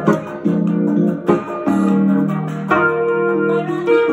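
Yamaha PSR-E series portable keyboard playing held chords in F major, changing chord about every second.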